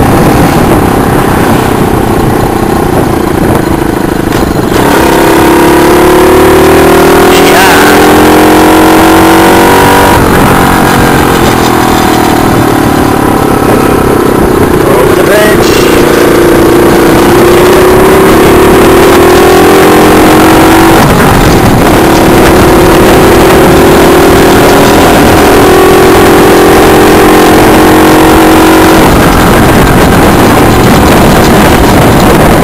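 Small 48 cc four-stroke semi-automatic mini chopper engine, heard from the rider's seat while riding. Its pitch climbs steadily under throttle, then drops sharply about ten seconds in and again about twenty seconds in, as it shifts up a gear, before climbing again.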